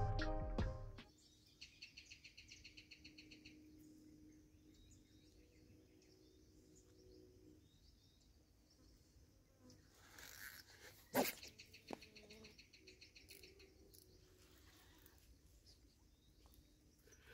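Music ending within the first second, then faint outdoor ambience with small birds chirping in short repeated trills. There is a single sharp click about eleven seconds in.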